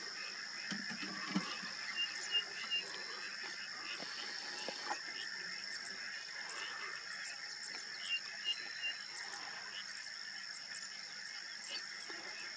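Grassland ambience: a steady high-pitched chorus of calling wild animals, with a bird giving a quick run of three short chirps twice, about two seconds and eight seconds in.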